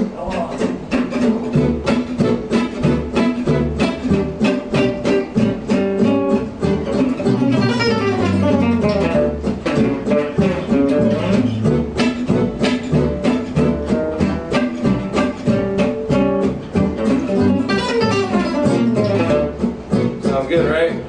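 Selmer-Maccaferri-style gypsy jazz acoustic guitar played unamplified: fast alternate-picked single-note lines working an A9 arpeggio lick that resolves to D major around different positions on the neck, with quick sweeping runs about eight seconds in and again near the end.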